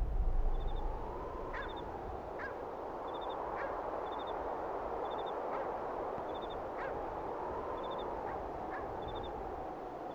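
Music fading out in the first second, then rural outdoor ambience: a steady hiss with scattered short bird calls and a faint high chirp repeating about once a second.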